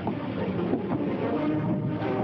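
Steady din of wartime piston fighter-plane engines running, from an old newsreel soundtrack.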